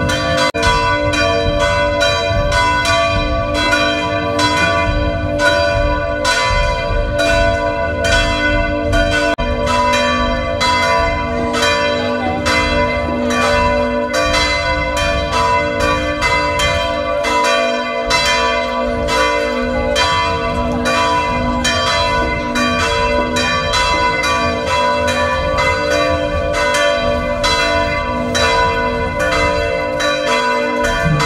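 Church bells ringing continuously in a fast peal, about three strikes a second with the tones ringing over one another.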